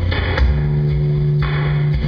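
Live rock band playing: electric guitars, bass guitar and drum kit, with a low note held from about half a second in and cymbal hits.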